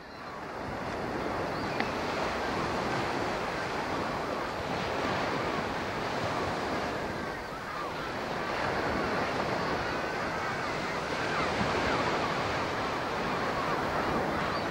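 Sea waves and wind on open water, a steady rushing noise that fades in over the first second.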